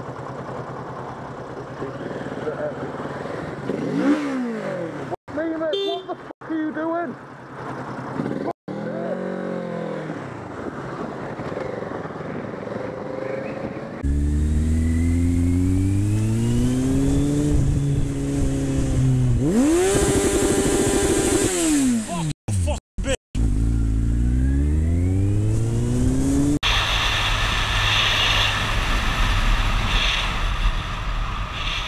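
Motorcycle engines heard from the rider's position, revving up and dropping back several times, then, louder from about halfway, accelerating with the pitch climbing and falling through gear changes. Near the end the engine gives way to a steady rush of wind on the microphone.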